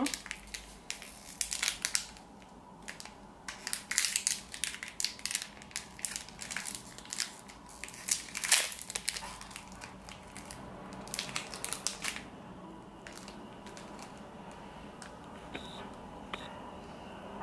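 Foil pouch of air-dry modelling clay crinkling and crackling as it is squeezed and handled, in several bursts over the first twelve seconds or so, then sparser.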